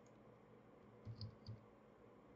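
Three faint computer keyboard keystrokes a little past a second in, typing a short word; otherwise near silence.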